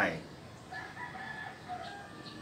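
A rooster crowing faintly in the background: one long call of steady pitch, lasting about a second, starting just under a second in.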